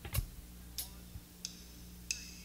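Drummer counting in the next song with sharp stick clicks, three evenly spaced about two-thirds of a second apart, over a low amplifier hum. The band comes in on the same tempo right after.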